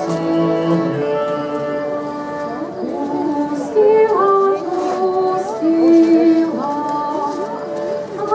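A folk ensemble singing a slow folk song in long, held notes that step from pitch to pitch.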